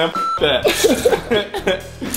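A man laughing in short bursts over background music, with a brief electronic beep just after the start.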